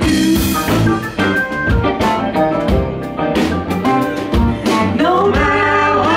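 Live band playing a song with electric guitars, bass and drum kit, a voice singing over them, loud and continuous.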